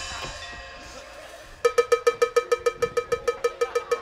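The tail of a loud percussion hit dies away, then about a second and a half in a cowbell-like metal percussion instrument is struck rapidly and evenly at one pitch, about eight strokes a second.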